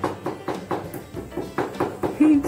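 Pestle pounding in a small ceramic mortar: a quick, even run of sharp taps, about four to five a second, over background music.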